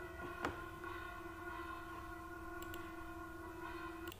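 A faint, steady hum with a low fundamental and several evenly spaced overtones, with one short click about half a second in.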